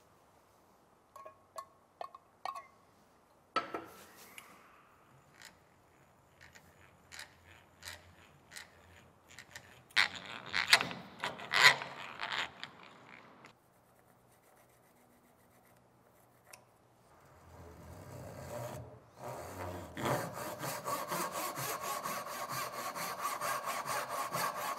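A hand drill boring a small hole into a hardwood axe handle, with faint clicks. Then scattered clicks and scrapes on the wood, loudest about ten to twelve seconds in. After a short silence, a backsaw cuts a kerf down into the handle with quick, even strokes, building from about eighteen seconds in.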